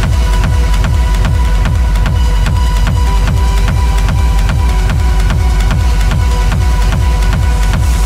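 Dark techno from a DJ mix: a steady kick drum about twice a second over a deep bass, with a ticking pattern high above.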